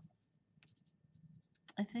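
A few faint, short strokes of a wax crayon rubbing on paper.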